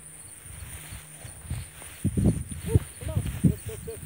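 A steady high insect trill, with irregular low rustling and thumps in the second half and a few faint short calls.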